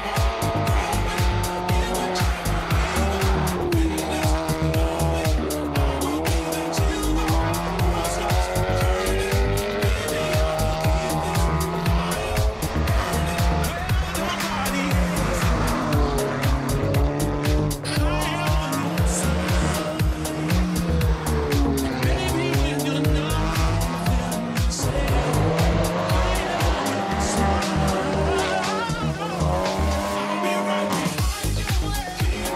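Seat Leon TCR race car's turbocharged four-cylinder engine revving hard, its pitch dropping and climbing again and again with gear changes, mixed with background music.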